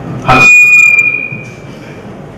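A knock on a handheld microphone followed by a high-pitched feedback squeal through the PA: one steady high tone that rings out and fades over about a second and a half.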